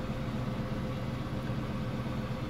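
A vehicle engine idling steadily: an even low rumble with a faint steady hum above it.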